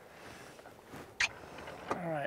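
Faint river ambience of water moving around a drift boat, with one brief, sharp sound about a second in and a smaller one near the end.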